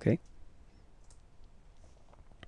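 A few faint clicks of a computer mouse about a second in, advancing a presentation slide.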